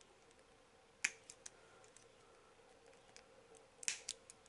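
Flush cutters snipping clear plastic parts off a sprue. There is a sharp snap about a second in, then a few small clicks, and a louder double snap near the end.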